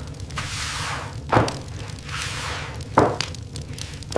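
Two dull thuds about a second and a half apart, like bread dough being slapped down and kneaded on a wooden table, over a low steady rumble of kitchen ambience.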